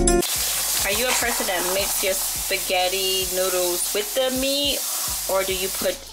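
Spaghetti with ground meat and tomato sauce sizzling in a hot pot as it is stirred and tossed together, with many short clicks of the utensil against the pot. Wavering pitched tones sound over it from about a second in.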